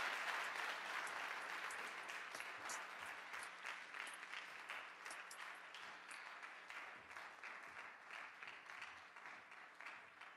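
Audience applauding in an auditorium. The clapping is strongest at first and gradually dies away.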